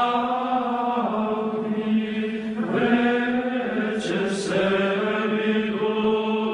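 Music: a singing voice holding long, chant-like notes of a second or two each, with a hissed 's' sound about four seconds in.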